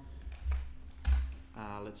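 Typing on a computer keyboard: a few keystrokes with dull thuds, the loudest a sharp click about a second in.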